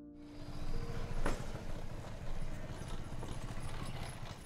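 Room ambience with a low rumble and irregular soft knocks, and one sharper knock about a second in. The last piano note dies away in the first second.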